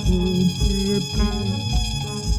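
Recorded music played through a DJ mixer, with a steady kick-drum beat a little under two beats a second under sustained chords and a melodic line.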